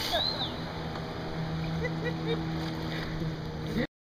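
Lake ambience after a jump: water settling after the splash under a steady low motor drone. The sound cuts off abruptly just before the end.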